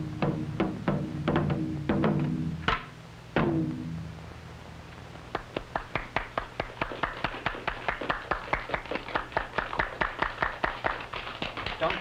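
Korean barrel drums struck with sticks in a drum dance: ringing, deep strokes about two or three a second, the last one ringing out a few seconds in. After a short lull comes a long run of quick, sharp taps, about five a second, growing busier toward the end.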